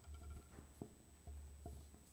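Near silence: room tone with a steady low hum and a few faint taps or knocks.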